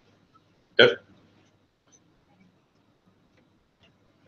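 A man's short spoken "OK?" about a second in, then near silence: quiet room tone with a few faint ticks.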